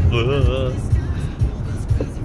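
Audi A6 3.0 TDI V6 diesel heard from inside the cabin: a steady low drone of engine and road noise under acceleration, the speed still climbing. A brief wavering voice rises over it in the first half-second.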